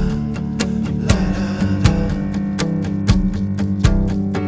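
Instrumental intro of a pop-rock song: strummed guitar over a steady beat, before the vocal comes in.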